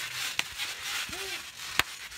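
Two sharp knocks about a second and a half apart, the second one louder, over steady background noise, with a brief short vocal sound between them.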